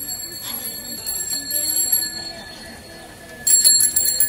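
A small metal bell ringing with a bright, high tone: a ring that lasts about two seconds at the start, then a louder rapid run of rings about three and a half seconds in.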